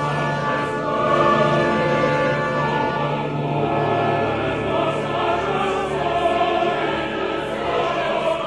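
Mixed chorus singing with a full symphony orchestra: sustained late-Romantic choral writing over a held low bass note, at a steady level throughout.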